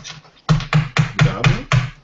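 A quick, even run of about six taps on a wooden table, about four a second, like hands drumming on the tabletop.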